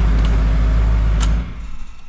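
2016 Duramax 6.6-litre V8 turbodiesel running with a steady low drone, its turbocharger destroyed, then shut off about one and a half seconds in. A single click comes just before it dies.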